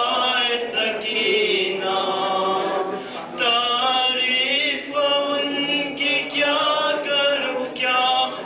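A group of men chanting together in unison: a Muharram mourning lament (noha), sung in long phrases that rise and fall.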